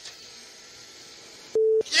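Faint hiss of an open Formula 1 team-radio channel, then about one and a half seconds in a short, loud single-pitched radio beep lasting about a third of a second.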